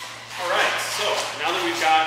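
A man speaking, over a low steady hum.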